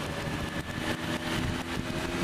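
Suzuki Bandit's inline-four engine running at a steady pitch under way, with wind and road noise.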